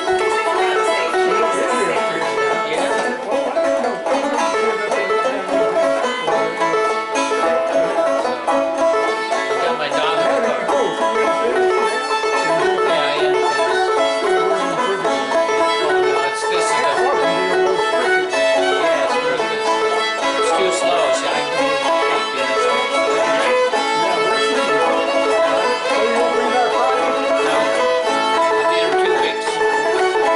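Fiddle and banjo playing a tune together, continuous and even, with the banjo's picking and the bowed fiddle melody going throughout.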